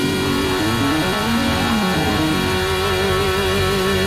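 Live soul band playing: held chords from guitars, bass, keys and horns, with a melody line that slides and bends over them.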